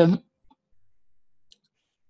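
A man's spoken syllable trails off right at the start, followed by near quiet with two faint short clicks.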